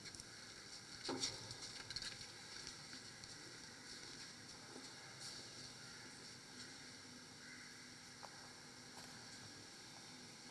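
Faint room tone, a steady low hiss, with a few soft clicks and knocks: a cluster about a second in and a single click near the end.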